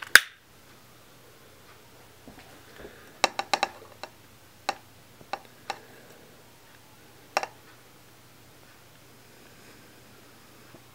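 Sharp clicks of a long-nosed butane utility lighter's spark trigger being worked to light it: a quick run of four clicks a little past three seconds in, then single clicks spaced through the next few seconds. A faint low hum runs underneath.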